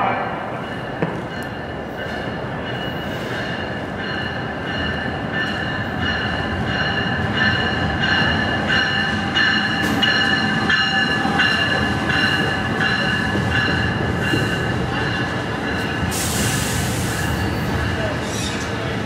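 Locomotive-hauled commuter train with bilevel coaches pulling in along the station platform, its wheels squealing steadily over a running rumble, with regular clicks of the wheels over rail joints. A short, sharp hiss of air comes about sixteen seconds in.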